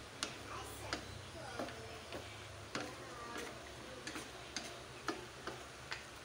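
A cooking utensil clicking lightly against the pan while a seafood and vegetable stir-fry is stirred, roughly two short clicks a second at an uneven pace.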